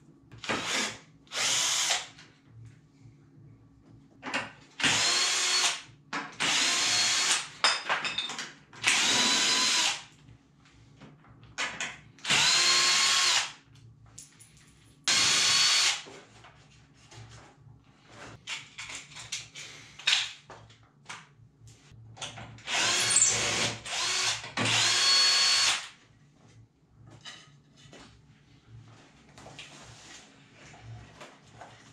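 Cordless drill-driver run in about nine short bursts of one to two seconds each against a wooden frame, the motor's pitch rising as each burst starts. Small knocks and handling clicks fill the gaps between runs.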